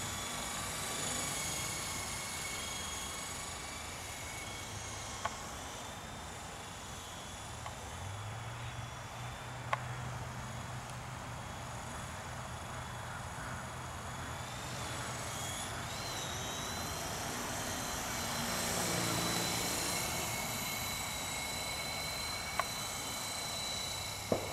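Esky Honeybee CP2 electric RC helicopter in flight: a steady high motor and rotor whine, shifting up in pitch about sixteen seconds in, with a few faint clicks.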